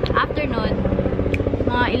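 A steady low engine drone with a rapid, even pulse, running under short fragments of a woman's voice; a single sharp click about a second in.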